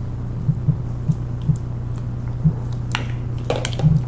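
Sliced bottle gourd being tipped from a plastic colander into a bowl of wet fermented fish sauce and pushed off with chopsticks: a few light clicks and soft wet squishes, more of them near the end. A steady low hum sits under everything.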